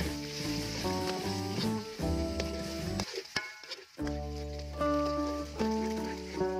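Eggs sizzling in hot oil in a wok as a metal spatula breaks and scrambles them, over background music with a melodic tune that drops out for about a second midway.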